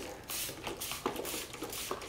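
Hand trigger spray bottle squirting pest-treatment spray onto a houseplant's leaves: several quick, hissy squirts in a row.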